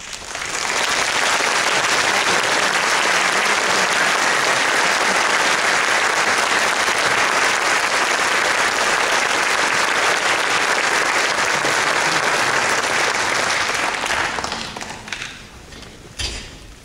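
Audience applauding: it swells within the first second, holds steady, and dies away a couple of seconds before the end.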